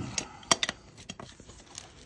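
A farrier's metal hoof pick scraping packed dirt out of the sole of a shod horse hoof, with several sharp clicks as it knocks against the steel shoe, mostly in the first second and a half.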